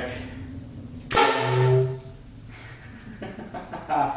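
Homemade PVC air cannon fired at 60 psi with no projectile, its air released all at once by a lawn-sprinkler solenoid valve. There is a single sudden, loud blast about a second in that dies away within a second. The valve opens and the cannon fires.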